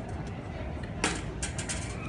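Small metal airport luggage trolley rolling on a tiled floor, its wheels rumbling low, with a quick cluster of light metallic clicks and rattles about a second in and again shortly after.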